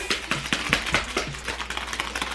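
A small paper seasoning packet, the cheddar cheese powder for Shaka Shaka Chicken, shaken by hand, giving a quick irregular run of crisp ticks and rustles, several a second.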